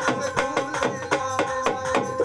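Live Rajasthani devotional bhajan music: hand drums beating a quick, even rhythm over steady held keyboard-like notes, with no clear singing.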